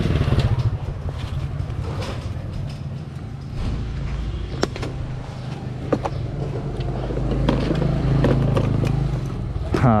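Honda motor scooter engine running steadily at low speed and idling, with another motorcycle passing close by at the start. A few sharp clicks come around the middle.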